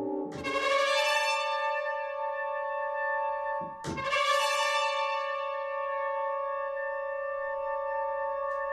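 Sampled orchestral brass from the Sonokinetic Espressivo library, playing the second variation of its aleatoric brass patch: a held brass chord that swells in bright and sustains. It breaks off and re-attacks just under four seconds in, then holds steady.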